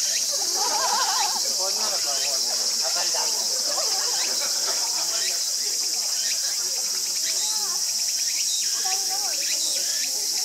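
Steady, high-pitched chorus of insects, running without a break.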